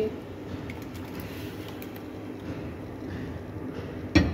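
Jaggery syrup simmering in an aluminium kadhai, a soft, steady bubbling hiss, as soaked pickled lemon pieces slide wetly into it.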